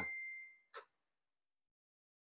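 A single high ringing tone fading out over the first half second or so, followed by a faint click and then near silence.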